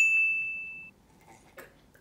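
A single bright bell-like ding sound effect marking the tea-sip counter. It starts suddenly and rings for just under a second, then cuts off abruptly.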